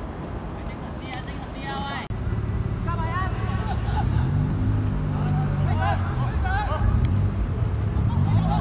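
Players' distant shouts and calls on a football pitch, over a steady low rumble; the sound changes abruptly about two seconds in, where the rumble becomes louder.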